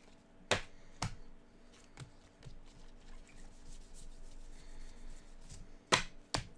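Baseball trading cards being handled and flicked through by hand: two sharp snaps about half a second and a second in, then fainter ticks of cards sliding against each other.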